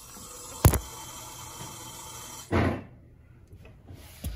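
Handling noise from a phone camera being moved: one sharp knock a little over half a second in, then a short rubbing thump about two and a half seconds in, over a faint steady hiss that drops away after the thump.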